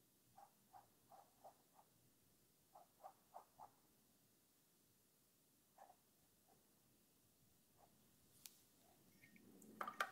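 Near silence: room tone with a few faint, soft ticks in the first few seconds and a single click later. A louder clatter begins right at the end.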